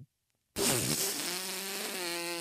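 A long, drawn-out fart sound that starts about half a second in after a moment of dead silence, opening with a raspy burst and then holding one steady pitch.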